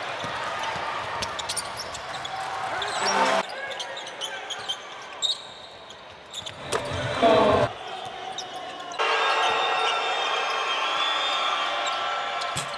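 Basketball game sound in an arena: the ball bouncing on the court under a mix of voices, in edited clips that cut abruptly about three and a half and nine seconds in, with a loud burst of noise about seven seconds in.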